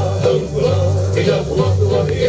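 Hawaiian hula music playing at steady volume, with a bass line moving every half second or so under the melody.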